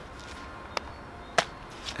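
Two short, sharp clicks about two-thirds of a second apart over a quiet, steady outdoor background.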